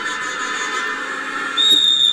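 A wrestling referee's whistle: one steady, high-pitched blast about a second long, starting near the end, stopping the bout. Underneath is the steady din of a large arena crowd.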